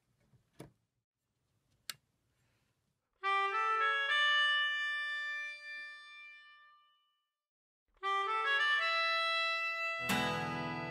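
Two faint clicks, then a melodica playing sustained chords: the first comes in about three seconds in and fades away over several seconds, and the second starts near the end.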